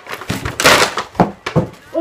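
Packing paper rustling and crinkling as hands dig through a box, with a longer burst about half a second in and a couple of sharp crackles after.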